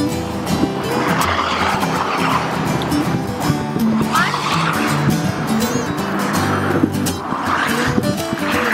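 Road traffic passing close by on a bridge, rising and falling in three whooshes, one of them a truck about four seconds in, over background music with a steady melody.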